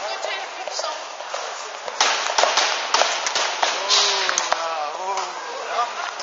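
Hoofbeats of a ridden Rocky Mountain Horse at the tölt, its four-beat gait: quick, sharp knocks on the floor, starting about two seconds in and getting louder as it comes close.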